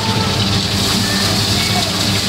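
Meat sizzling on the hot grate of a charcoal grill, a steady loud hiss, with a steady low hum underneath.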